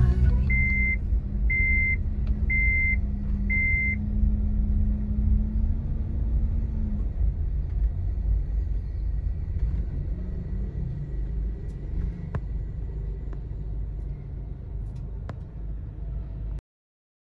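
Street traffic: the low rumble of car engines and tyres, with one engine's steady hum that stops about seven seconds in. Over the first four seconds a high electronic beep sounds five times, about once a second.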